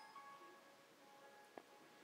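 Near silence, with faint held notes of a karaoke backing track fading away and a soft click about one and a half seconds in.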